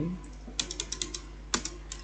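Typing on a computer keyboard: a quick run of about seven keystrokes starting about half a second in, then a few more single key clicks near the end.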